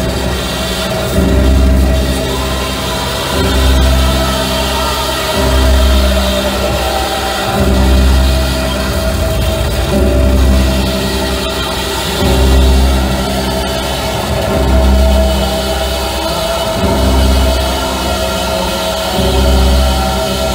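Live music: a woman's voice sung through a microphone over a sustained, droning accompaniment, with a deep bass swell returning about every two seconds.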